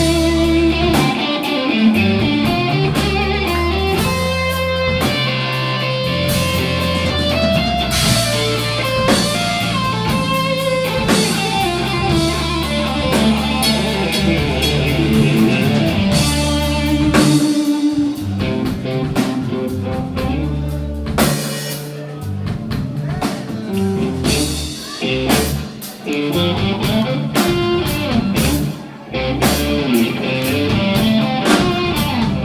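Live blues-rock band playing an instrumental passage: Fender electric guitar lines over bass guitar and drum kit with cymbals. The playing thins out and drops in volume in the last third.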